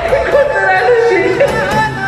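A woman crying and wailing in a high, wavering voice that breaks every fraction of a second, over background music.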